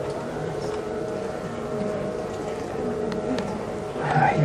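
Steady background hum holding two faint level tones, with faint low voices murmuring under it.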